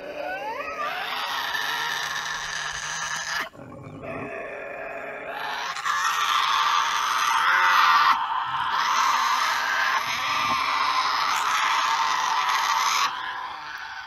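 Tasmanian devils giving the devil screech, a loud guttural screech and growl, as two devils face off. A first burst of screeching breaks off after about three seconds, then a longer stretch runs until about a second before the end.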